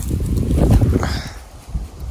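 Low rumble of wind and handling noise on a phone microphone as the camera swings, loudest in the first second and then fading.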